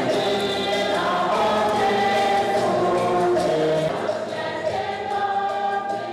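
A church choir singing, many voices together holding long notes and moving from chord to chord.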